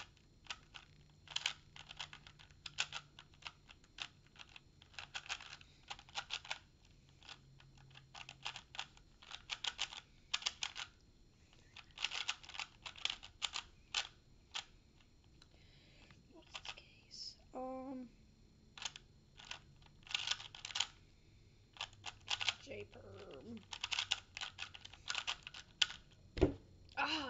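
Original Rubik's brand 3x3 cube being turned quickly by hand, its plastic layers clicking in fast runs of turns with short pauses between; the cube has just been lubricated with Stardust lube.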